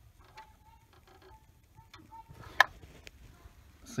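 Quiet handling of plastic and rubber engine-bay parts around the fuel line and its push-in mounting tab: a few faint squeaks, then one sharp click about two and a half seconds in.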